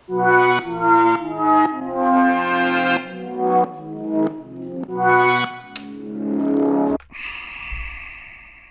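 Synthesizer played on the Light Field's keyboard projected onto a tabletop: a run of held, brass-like chords that change every half second to a second. About seven seconds in it gives way to an airy, hissy held sound that slowly fades.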